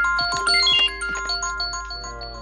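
iPhone alarm ringing: a quick run of short, bright chiming notes, loudest in the first second and dying down toward the end.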